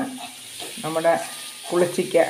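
Pickle paste of dried bilimbi and spices sizzling in oil in a wok as a steel spoon stirs it. Two short bursts of speech, about a second in and near the end, are louder than the sizzle.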